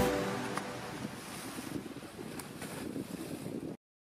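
The trailer music stops at the start, its last notes dying away, and leaves a soft, even wash of ocean surf that cuts off suddenly near the end.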